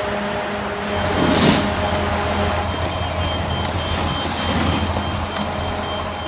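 Steady mechanical drone of a fan-type snowmaking gun blowing snow, a continuous rushing noise with a low hum that grows fuller about a second in.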